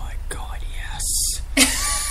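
A person speaking breathily, close to a whisper, with a sharp hiss about a second in.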